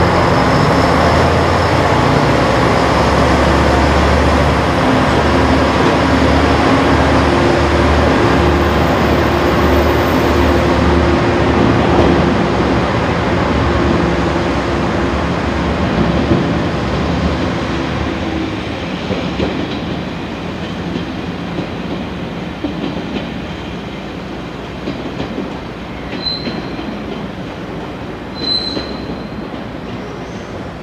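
KiHa 147 diesel railcar pulling away. Its diesel engine throbs and rises in pitch as it accelerates, then the sound fades as the train draws off. Brief high wheel squeals come near the end.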